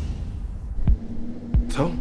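Trailer sound design: a low rumbling drone with two deep thumps a little over half a second apart, like a heartbeat, about a second in, followed by a steady hum. A man's voice begins near the end.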